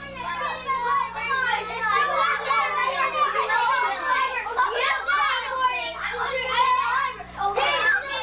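A group of children's voices talking and shouting over one another, too jumbled for any words to stand out.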